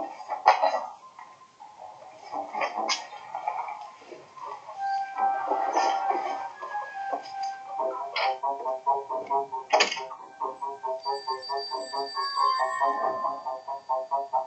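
Footsteps and knocks as people leave a room, with a door shutting sharply about ten seconds in. Background music with a fast pulse of repeated notes comes in from about eight seconds.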